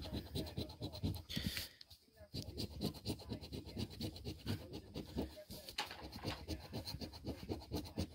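A large metal coin scratching the coating off a paper scratch-off lottery ticket in rapid back-and-forth strokes, with a brief pause about two seconds in.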